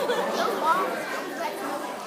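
Several people's voices talking over one another, indistinct chatter.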